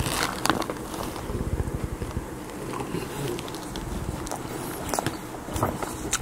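Close-miked chewing of a mouthful of hash browns, with wet mouth smacks throughout. A few sharp clicks come near the end as the metal fork goes back to the plate.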